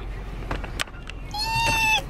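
Low car-cabin hum with a faint click, then past the halfway point a woman lets out a high, drawn-out vocal note, a held squeal.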